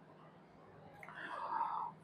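Near silence for about a second, then a man's faint whisper for just under a second.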